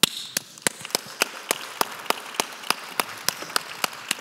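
Audience applause with one person's hand claps close to the microphone, sharp and regular at about three and a half claps a second, starting suddenly.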